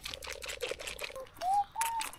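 Young goat suckling milk from a bottle teat: a quick run of wet sucking clicks. A short rising high tone comes in near the end.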